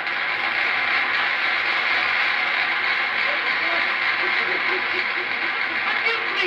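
Audience laughter and applause on an old vinyl record of a comedy sketch: a dense, steady wash, with faint voices under it.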